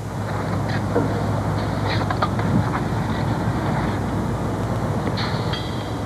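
Steady machinery running with a low hum, with a few faint short knocks over it.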